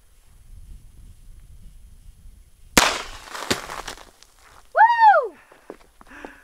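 One shot from a Heritage Tactical Cowboy, a .22 single-action revolver with a compensator on its threaded barrel, about three seconds in, with a noisy tail and a second sharp crack half a second later.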